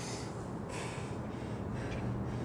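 A man breathing hard from exertion, a strong gasping exhale in the first half second and another breath near the end.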